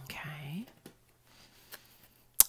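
A woman's soft, breathy murmur in the first half-second, then two faint clicks from her hand handling the tarot deck on the wooden table.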